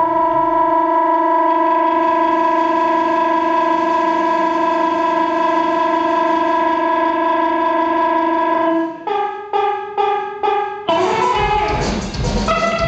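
A live rock band plays a single long sustained note, rich in overtones, for most of the time. It then breaks into a quick stutter of short pulses, and the full band with drums comes in loudly about a second before the end.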